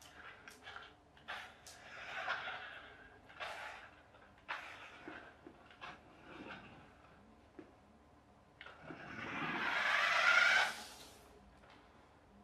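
Battery-powered radio-controlled toy car being driven on a wooden floor: its small electric motor whirring and its tyres scrubbing as it turns and drifts, in short runs broken by a few knocks. The loudest run builds for about two seconds near the end, then stops.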